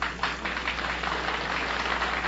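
Studio audience applauding, many hands clapping at once; it comes in suddenly right at the start and holds steady.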